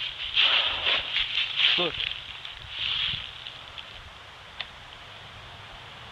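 Short bursts of rustling and movement noise, as of footsteps through leaf litter along a woodland path. A voice says "look" about two seconds in. After that it goes quieter, with a single click in the middle.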